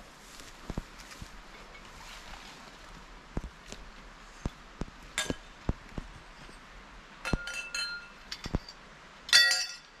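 Scattered light clicks and knocks, then short ringing clinks of hard objects striking each other, the loudest a bright clink near the end.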